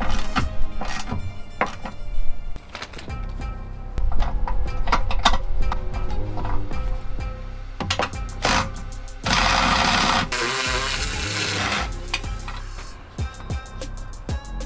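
Background music over hand-tool work on a car's front suspension: a ratcheting gear wrench clicking on a nut, then a cordless electric ratchet spinning the nut for about a second, a little past two-thirds of the way through.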